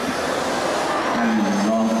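A man speaking Thai into a microphone, over a steady rushing background noise; his voice comes in about a second in.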